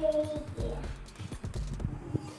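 Segmented plastic hula hoop clicking and rattling irregularly as it is spun around a child's waist, with a short child's vocal sound at the start.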